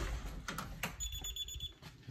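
A door latch clicking as the door is opened, then a security alarm keypad's entry chime: a high, rapidly pulsed beep lasting under a second, about a second in.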